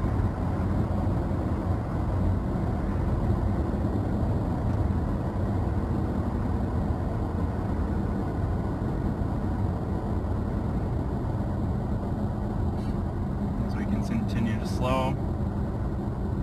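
Steady road and engine noise inside the cab of a 2016–2017 Toyota Tacoma with the 3.5 L V6, as the truck slows down from highway speed.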